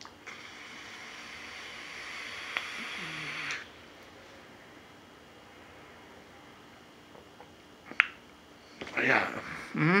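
A vape drawn on for about three and a half seconds: a steady airy hiss that cuts off sharply. Then quiet, broken by a sharp click near the end and a man's short 'mm-hmm'.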